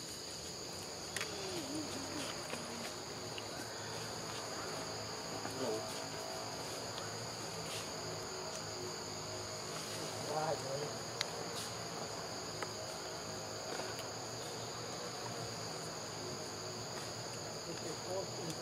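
Steady high-pitched insect chorus, two unbroken high tones holding throughout, with a few faint short calls and scattered clicks over it.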